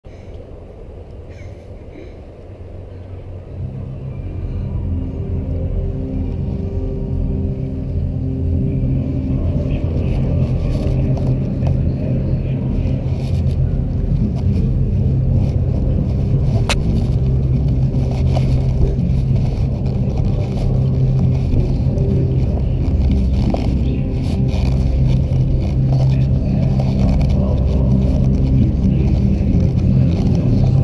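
A continuous low rumble that swells up about three and a half seconds in and holds steady, with a few low held tones running underneath it. It is handling and movement noise on a body-worn action camera as band members walk on and wheel props across the turf.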